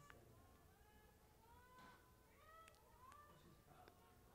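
Near silence, with faint distant shouts and calls from players on the field and a few faint clicks.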